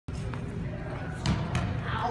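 Sharp smacks of a ball struck by rackets and hitting a gym floor: a faint one, then two loud ones in quick succession just past halfway.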